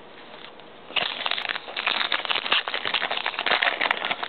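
Foil wrapper of a 2008 Topps football card pack crinkling and crackling as it is handled and torn open, starting about a second in and running on as a dense rustle.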